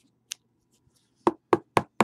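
Four quick, sharp knocks about a quarter second apart, after a single lighter click: hands knocking a cardboard card box or a stack of cards against a tabletop while handling them.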